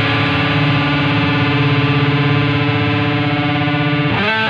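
Punk rock music: a distorted electric guitar chord held and ringing steadily, with a slight pulse in the middle, before the band changes to a new part right at the end.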